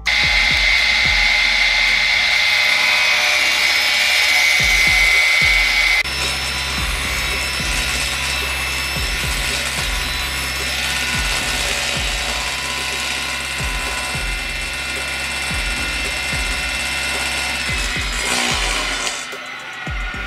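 Steady mechanical whirring with faint clicks from the table saw's screw-driven blade lift as the blade, tilted to 45 degrees, is raised through the table slot. The sound changes abruptly about six seconds in.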